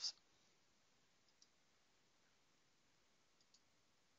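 Near silence with faint computer-mouse clicks: two quick pairs, one about a second in and one near the end.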